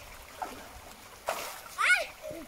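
Water splashing about a second and a quarter in, then a short rising shout or whoop from a person near the end, the loudest sound here.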